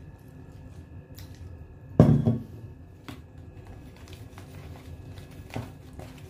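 Warm water poured from a bowl onto herbal powder in a plastic tub, with one loud thump about two seconds in, then a metal spoon clicking and scraping in the plastic tub as the wet powder is stirred.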